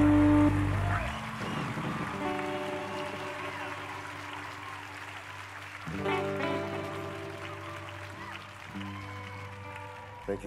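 Live rock band on stage: a loud, sustained chord drops away about a second in, leaving quieter held notes, with a fresh swell of notes about six seconds in, over audience applause.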